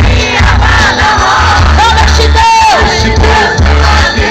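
Loud Christian worship music from a live band over stage speakers, with a heavy bass and a crowd singing and shouting along; a single voice holds a long note about halfway through.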